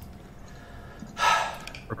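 A man's short, breathy exhale a little over a second in, heard over a video-call line.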